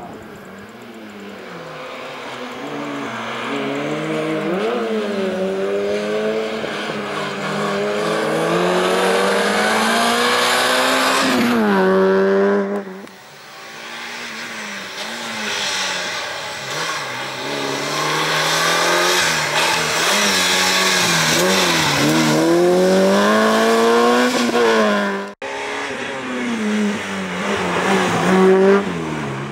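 A slalom race car's engine revving hard, its pitch climbing and falling again and again as it accelerates and backs off between cone gates. The sound breaks off abruptly twice, about thirteen seconds in and again near the end.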